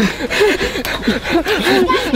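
A man laughing: a run of short rising-and-falling bursts of laughter.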